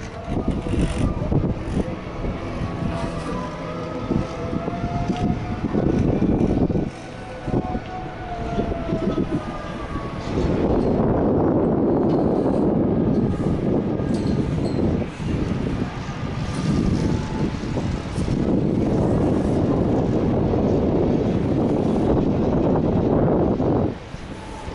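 Strong gusty wind buffeting the microphone on a moving chairlift. In the first ten seconds a rumble and a rising-and-falling whine come from the lift's cable running over the tower sheaves.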